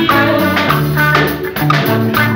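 Live band playing upbeat music: electric bass and electric guitar over a regular drum beat.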